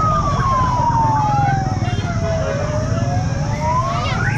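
Several siren wails overlapping: one long slow sweep that falls in pitch and then climbs again, with quicker up-and-down wails over it and a steady low hum underneath.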